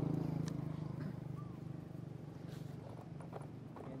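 A low engine hum fades away over the first second or two. Light scattered clicks and rustles of dry leaves follow as macaque infants move and forage on the ground, with one short high chirp about a second and a half in.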